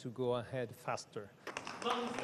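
A man's voice speaking softly for about the first second, then a brief lull before louder sound comes in near the end.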